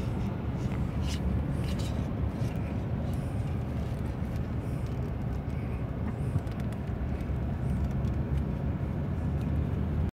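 Steady low rumble of a car on the move, heard from inside the cabin: engine and tyre noise on the road.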